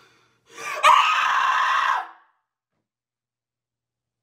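A girl screams once, loudly, for about a second and a half. It then cuts off to dead silence.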